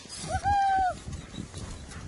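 A short high-pitched vocal squeal, held steady for about half a second soon after the start, then fainter scraping noise.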